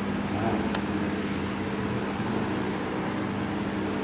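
Steady background hum and noise with a constant low droning tone, like distant traffic or a running fan, and a couple of faint ticks in the first second.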